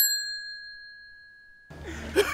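A single bright bell-like ding, a sound effect struck once as the music cuts off, ringing out and fading away over most of two seconds.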